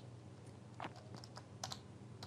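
A few faint, short clicks from operating a computer to step through moves on an on-screen chess board, two coming close together about three quarters of the way through.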